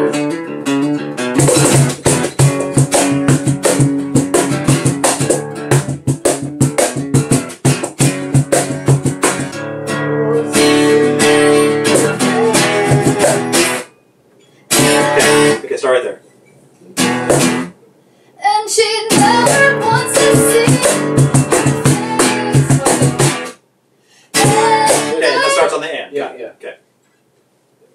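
Acoustic guitar strummed with cajon hits: a song played for about fourteen seconds, then broken off and restarted several times in short bursts with pauses between, as a rehearsal restarts after a stop.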